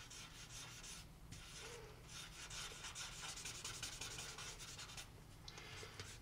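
Paper blending stump rubbing faintly over graphite on sketch paper, a soft continuous scratchy rubbing.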